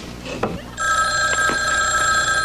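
Laughter trails off, then about three-quarters of a second in a desk telephone's bell starts ringing, a steady continuous ring of several pitches that carries on to the end.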